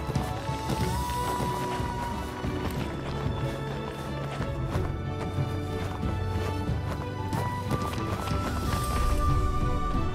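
Film score music with a held melody line that rises in pitch, over a dense run of percussive strikes.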